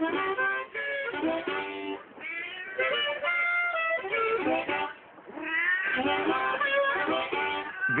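A cat meowing in long, drawn-out calls over blues music with harmonica, the calls coming in runs with a short lull about five seconds in.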